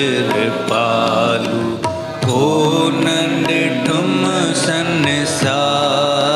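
Devotional bhajan: a voice singing long, wavering notes over instrumental accompaniment.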